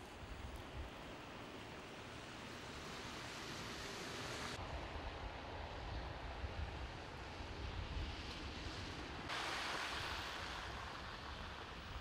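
Steady outdoor noise of a snowy street in falling snow: an even hiss over a low rumble. Its tone changes abruptly twice, about four and a half and nine seconds in.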